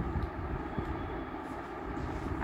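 Steady low background rumble with a few faint knocks.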